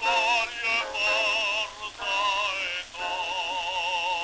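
Bass voice singing an operatic prayer in Italian on a c. 1903 acoustic Pathé disc recording, with wide vibrato and a hiss of surface noise; several short phrases, then a long held note from about three seconds in. The low end is thin, typical of an early acoustic recording.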